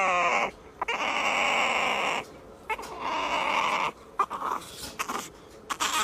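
A puppy whining and crying in a string of long, drawn-out cries, the first one falling in pitch.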